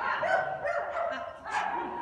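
Shetland sheepdog barking while running an agility course, with one sharp bark about a second and a half in.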